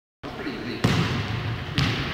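A volleyball striking a hardwood gym floor twice, about a second apart, with voices in the background.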